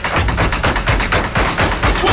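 Stomp-style percussion in a TV commercial soundtrack: rapid stick taps and thuds, several strikes a second, in a driving rhythm.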